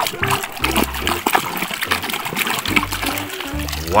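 Water splashing and sloshing in quick small splashes as a hand scrubs a toy car under water in a tub, over background music with a steady bass.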